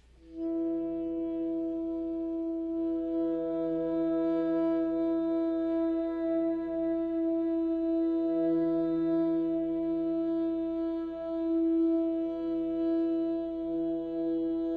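A recorded music track begins: a sustained chord of several steady tones swells in about half a second in and holds almost unchanged, with a gentle swell and ebb in level.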